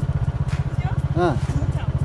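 A motor vehicle's engine running steadily, a low drone with a fast even pulse, heard while travelling.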